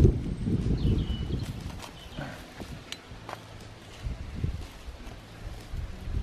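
Hand trowel digging into bark-mulched soil: irregular short scrapes and knocks as the blade goes in and lifts the earth.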